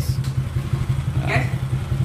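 Small single-cylinder engine of a Honda C70-style step-through motorcycle idling steadily with a low, even putter, just started by its remote starter.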